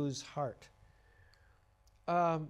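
A man's voice trailing off at the end of a sentence, followed by a faint single click and then near silence.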